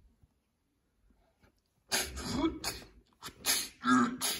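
A person's voice making several short, breathy, hissy bursts, starting about halfway in.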